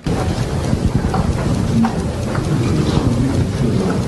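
Loud, steady rumbling noise that cuts in abruptly, with only a few faint, brief tones inside it.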